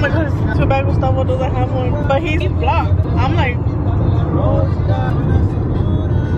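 Steady low rumble of a Toyota car driving at road speed, heard inside the cabin, with a woman's voice rising and falling over it.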